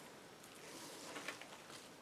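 Faint rustling of a crumpled paper towel with a few soft ticks from metal tweezers, as a tiny wet water-slide decal is dabbed on it to blot off the water.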